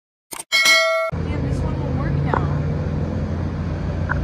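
Subscribe-button animation sound effect: two quick mouse clicks followed by a bright bell-like ding that rings for about half a second. It cuts off sharply about a second in, and a steady low hum with background noise carries on after it.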